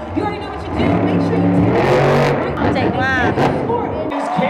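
Monster truck's supercharged V8 engine running loud and holding a steady note as the truck drives across the dirt arena floor, with crowd voices and arena music around it.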